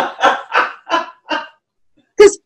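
A woman laughing: a run of about five short 'ha' pulses that stops about a second and a half in.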